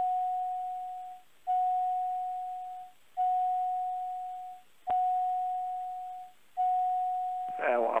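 Aircraft cockpit warning tone sounding over and over: five single-pitch beeps, each just over a second long and fading away, about every second and a half, with a click about five seconds in.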